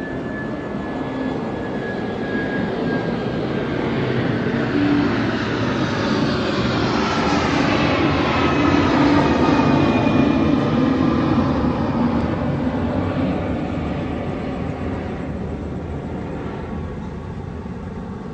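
Airplane passing overhead: engine noise that swells to its loudest about halfway through and then fades away, its tones sliding down in pitch as it goes by.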